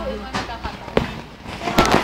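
Handling noise on the recording device's microphone: a sharp knock about a second in, then a burst of loud crackling knocks near the end, with brief snatches of a voice early on.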